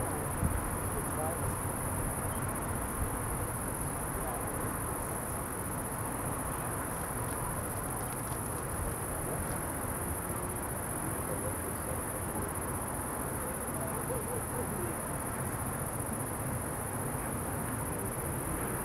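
A steady, unbroken high-pitched chorus of night insects over a low background hiss and rumble.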